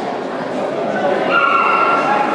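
A dog whining: one high, steady whine starting about a second in and lasting just under a second, over a murmur of voices in a large hall.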